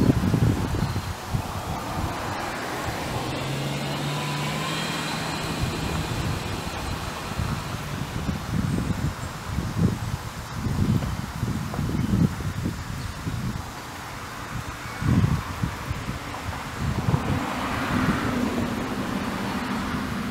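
Outdoor background noise: a steady low hum for a few seconds near the start, then uneven wind gusts buffeting the microphone.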